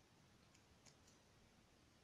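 Near silence, with three faint clicks of glass seed beads and crystals knocking against each other and the beading needle, close together about half a second to a second in.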